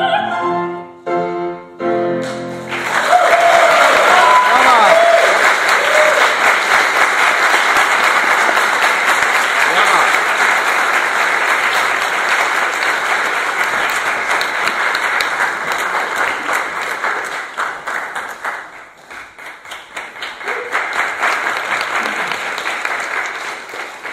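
An operatic soprano's final sung notes end in the first two seconds, then an audience applauds, with a few voices calling out early in the applause. The clapping thins out past the middle, swells briefly again and stops near the end.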